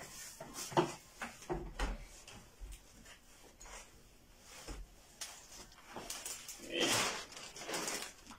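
Handling noise from gaming chair parts being fitted by hand: scattered light knocks and clicks, with a longer noisy swish near the end.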